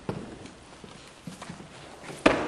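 Footsteps on a wooden floor: a few soft knocks at uneven intervals, two of them close together right at the start.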